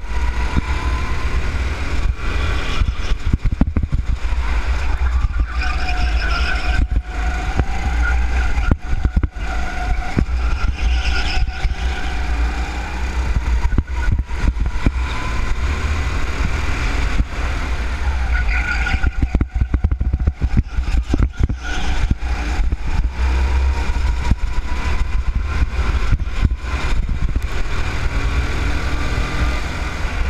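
Go-kart engine running at speed, heard from on board, its pitch dropping and climbing again as the kart slows for corners and accelerates out, over a heavy rumble of wind and vibration on the camera.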